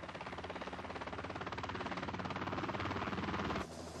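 Helicopter rotor chopping in rapid, even beats, growing louder, then cutting off suddenly near the end.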